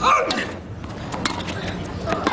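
Tennis serve and the start of the rally: a loud hit with a short vocal sound at the start, then a few sharp pops of racket on ball over the next second.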